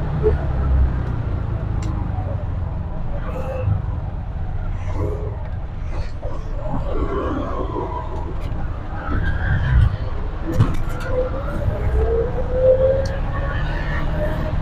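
A TVS King auto-rickshaw's single-cylinder petrol engine running steadily as it drives through traffic, heard from inside its open cabin. Brief voice-like sounds come through in the middle and near the end.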